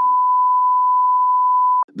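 A steady electronic beep at one pitch, about two seconds long, cutting off abruptly near the end.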